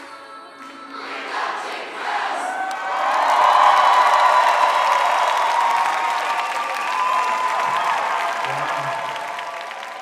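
Audience cheering and applauding as the dance music ends about a second in; the crowd noise swells quickly, holds loud, then slowly fades near the end.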